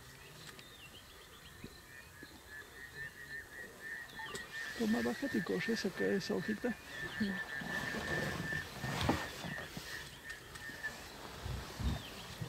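An old male lion feeding on a spotted hyena carcass, chewing and tearing at the meat in a rapid run of sounds that gets louder from about five seconds in.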